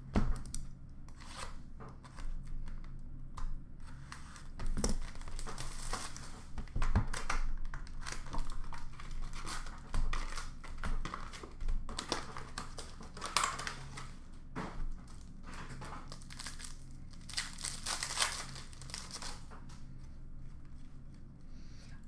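Hockey card boxes and packs being opened by hand: wrappers and packaging tearing and crinkling in irregular bursts, with a few sharp knocks of cardboard being handled.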